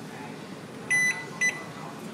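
Two short, high electronic beeps about half a second apart, the first slightly longer, over faint room noise.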